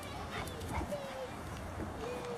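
A Labrador's paws knocking on concrete as it runs in and hops onto a raised mesh cot bed, with a short thin squeak about a second in.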